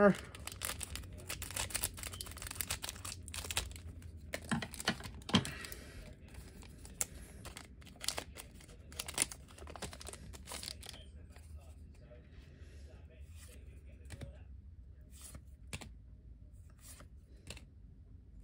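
Foil trading-card booster pack being cut open with scissors, then its wrapper crinkling and tearing as the cards are pulled out. Dense crackling for the first ten seconds or so, then only light scattered rustles and clicks of card handling.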